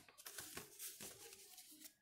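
Faint rustling of a sheet of double-sided craft paper as it is handled and bent by hand.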